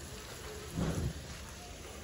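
Water spraying from a garden hose nozzle in a fine shower onto bonsai foliage and soil, a steady hiss like rain, with a brief louder burst just under a second in.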